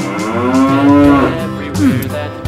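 A cow mooing once, a long call rising then falling in pitch for over a second, followed by a short falling call near the end, over nursery-rhyme backing music.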